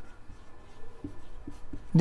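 Marker pen writing on a whiteboard: faint scratchy strokes with a few light taps in the second half as words are written.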